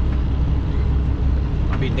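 Steady low rumble of a heavy truck's diesel engine, heard inside the cab while the truck moves slowly in traffic.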